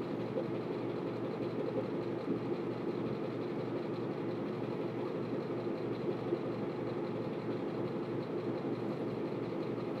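A steady low mechanical hum, even throughout, with a faint tap about six seconds in.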